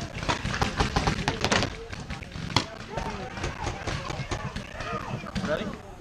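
Rapid runs of sharp pops from paintball markers firing, quickest and densest in the first second and a half, under indistinct shouting of players.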